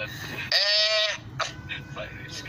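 A man's drawn-out nasal "ehh" cry, bleat-like, once about half a second in and lasting about half a second.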